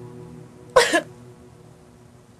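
A woman crying: one short, sharp sob about a second in, over quiet background music.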